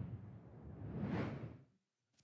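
Whoosh sound effect of a TV news logo transition: one swish fading away over the first half second, then a second rising swish that peaks just past a second in and dies out before the end.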